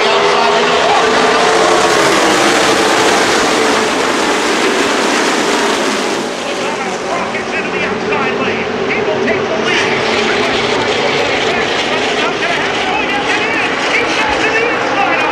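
A field of NASCAR stock cars' V8 engines running at racing speed on the track, a loud, steady mass of engine noise. Crowd voices are heard over it near the end.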